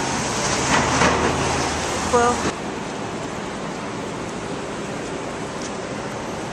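City street traffic noise with a car passing, and a brief high beep about two seconds in. About halfway through the sound drops suddenly to a quieter, steady street background.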